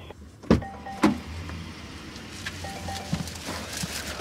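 Two sharp knocks, then a car's electric power window running down with a steady low motor hum for about two seconds.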